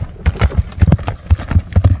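Hoofbeats of a ridden horse moving off across dry, stony earth: a quick, uneven run of dull thuds, several a second.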